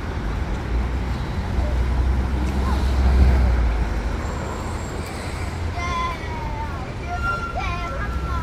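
Street traffic noise with a low rumble that swells about two to three seconds in, then eases.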